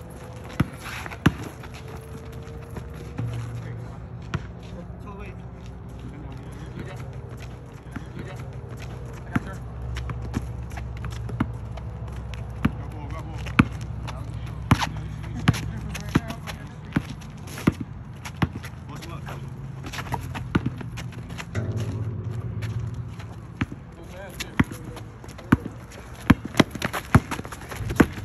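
A basketball bouncing on an outdoor asphalt court, with players running, making sharp irregular thuds and footfalls throughout, over a low steady hum.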